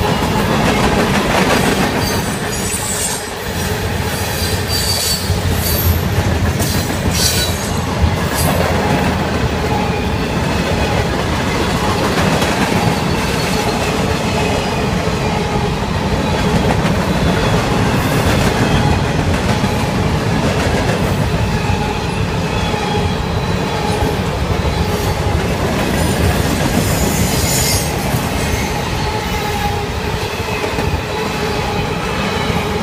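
A freight train's cars rolling past a grade crossing: a steady rumble of steel wheels on rail, with sharp clicks and steady ringing tones over it.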